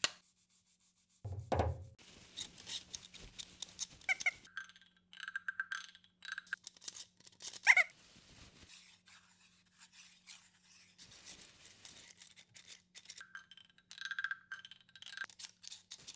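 Handling of an oak board on a wooden workbench. A low thump comes about a second and a half in, then scraping and squeaky rubbing, with one sharp knock that rings briefly a little before halfway.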